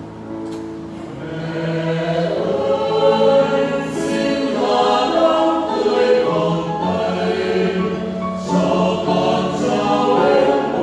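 Mixed church choir singing a hymn in held chords. The singing starts soft and grows louder about a second in.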